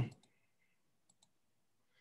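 A few faint computer mouse clicks, a pair just after the start and another pair about a second in, as the presenter skips forward through a video.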